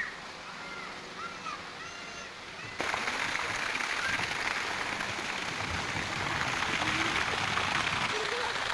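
Faint voices, then a sudden jump about three seconds in to a loud, steady rushing noise, like running water, that carries on to the end.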